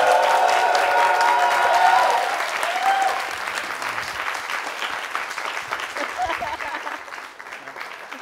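Studio audience clapping and cheering for an artist coming on stage, with a long held shout over the clapping for the first two seconds; the applause then fades away.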